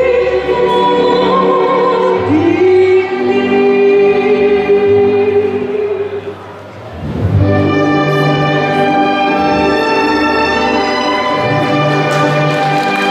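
A woman singing long held notes in an operatic style over an orchestral backing track. About six seconds in her phrase ends, the music dips briefly, and an orchestral waltz passage without singing takes over.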